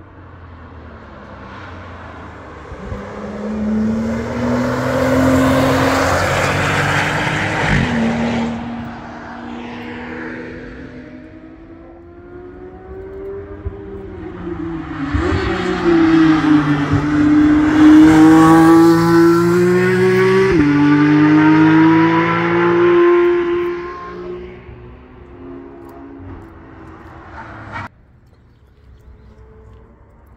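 Two cars driving past at speed, one after the other. Their engine notes rise and step in pitch at gear changes. The second and louder is a Porsche 911.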